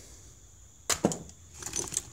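Metal hand tools being handled: a sharp knock about a second in, then a scatter of light clinks and rattles as tools are set down and picked out of a tool bag.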